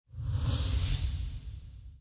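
Euronews logo sting: a whoosh sound effect over a deep rumble, swelling about half a second in and fading away by the end.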